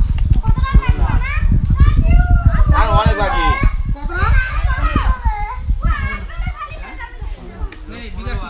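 Children shouting and calling out to one another during a game, several high voices overlapping, louder in the first half and easing off toward the end. A low rumble runs underneath.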